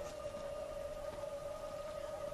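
A single steady, high-pitched held tone, an eerie drone in a horror film's soundtrack, over faint background hiss.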